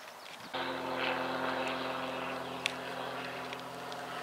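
A steady, even engine drone that starts abruptly about half a second in. A single sharp knock comes near the middle.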